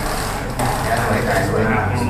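Speech: voices talking over a steady low hum.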